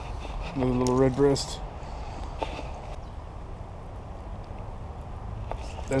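A man's short wordless vocal sound, a hum that holds level and then rises, about half a second in. A few light clicks follow, over a steady low rumble.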